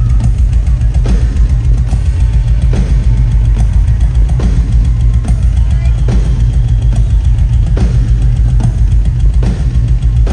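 Live rock drum solo on a large double-bass drum kit: a dense, continuous low bass-drum pounding, punctuated about twice a second by sharp tom and cymbal hits, played very loud.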